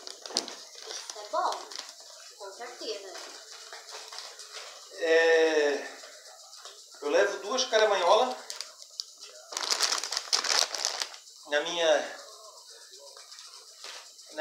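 A plastic supplement pouch crinkling as it is handled, loudest for about a second and a half past the middle, between short bursts of a man's voice.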